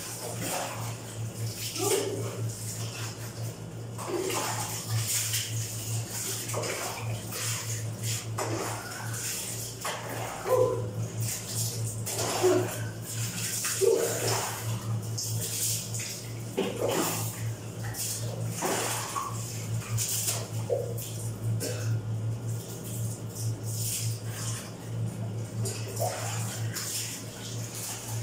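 Water poured over a person from a dipper during a bucket-and-basin bath, splashing onto a tiled floor every couple of seconds, with a steady low hum underneath.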